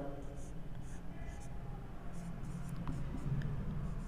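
Marker pen writing on a whiteboard: a series of short, faint scratchy strokes.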